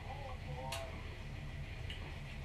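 A single sharp click of a glass beer bottle being picked up and knocked against something, about two thirds of a second in, over a low steady hum, with a faint murmured voice just before it.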